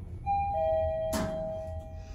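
Mitsubishi lift's arrival chime: two falling tones, ding-dong, ringing on, signalling the car reaching a floor. About a second in, a sharp click.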